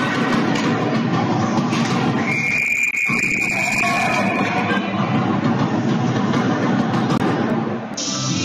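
Dense ice-rink din, with one steady high whistle blast lasting about two seconds, starting about two seconds in: a referee's whistle stopping play after a scramble at the goal.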